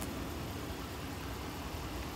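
Steady low rumble with an even hiss above it, unchanging through the pause.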